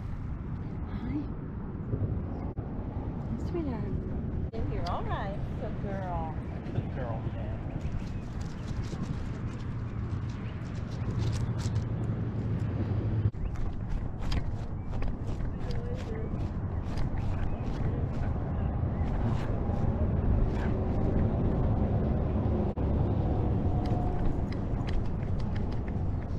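Wind and handling rumble on a dog-mounted action camera as the dog runs across grass, with rapid clicks and knocks from its gait and harness that grow more frequent through the second half.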